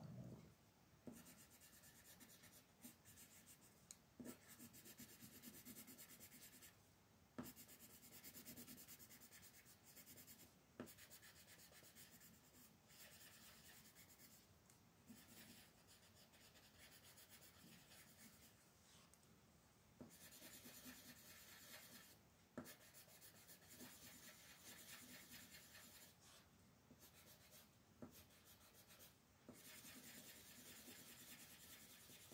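Faint colored pencil scratching on coloring-book paper in quick, repeated shading strokes, coming in stretches broken by short pauses, with a few light taps of the pencil tip.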